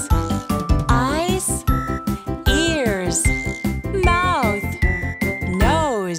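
Children's song backing track with a regular beat and chiming, bell-like notes. Over it a voice calls out single words, each in a swooping rise-and-fall of pitch.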